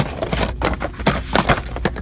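Cardboard boxes of baby bottles scraping and knocking as one is pulled off a store shelf and handled, a quick string of rustles and knocks with the loudest right at the start.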